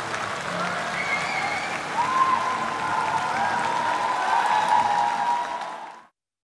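Large crowd applauding steadily, with a few voices calling out over it; the sound fades out near the end.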